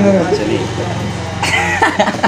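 Men's voices chatting and laughing, with a short throaty burst about one and a half seconds in.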